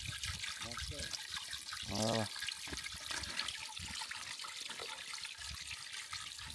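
Water trickling and splashing steadily as it spills from a stone fountain trough over a stone lip into the channel below. A short bit of voice is heard about two seconds in.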